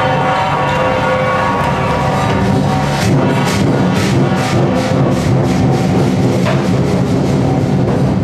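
Loud festival percussion music: drumming under sustained ringing metallic tones. Sharp strikes fall about twice a second from about two and a half to six and a half seconds in.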